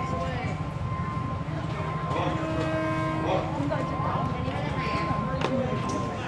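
A distant train horn sounding one long note about two seconds in, lasting about a second and a half, over the chatter of a crowd. It is the train approaching along the market's track.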